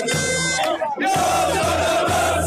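Outro music with a steady beat mixed with a stadium crowd cheering. The sound dips briefly just under a second in, and the crowd noise comes up stronger after it.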